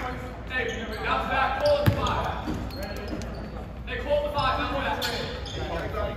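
Indistinct voices talking in a large gym, with one basketball bounce on the wooden floor about two seconds in.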